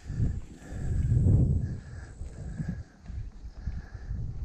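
Footsteps on a dry grassy dirt path with low rubbing thuds from a chest-mounted camera microphone as a person walks, loudest about a second in.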